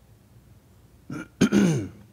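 A man clearing his throat close into a handheld microphone, about a second in: a short catch, then a louder, longer clear that falls in pitch.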